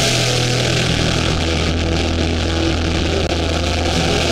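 Live hardcore band's distorted electric guitars and bass holding a loud, steady low note through the amps.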